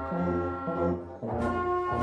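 A children's wind band, led by brass (trombones, trumpets, euphoniums and tubas) with clarinets and flute, playing a march in sustained chords. The sound briefly dips, then a new chord enters about a second and a quarter in. The parts are separate home recordings mixed together.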